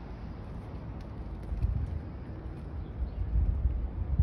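Wind buffeting a phone's microphone outdoors as a low rumble, with stronger gusts about one and a half seconds in and near the end.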